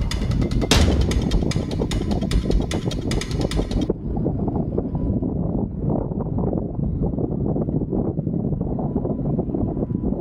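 Background music with a drum beat that cuts off about four seconds in, leaving the steady low rumble of a car driving on a gravel road, heard from a camera mounted on the car.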